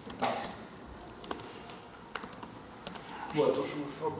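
Typing on a computer keyboard: scattered, irregular key clicks as a line of code is entered.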